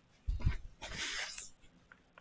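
A soft low thump, then a short burst of hissing, rustling noise lasting about half a second.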